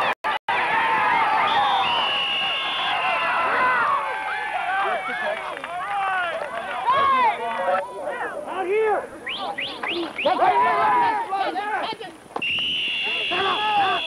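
Many overlapping voices of children and adults shouting and calling out on a youth football field, with a steady high whistle blast about two seconds in and another near the end. Two short audio dropouts break the sound at the very start.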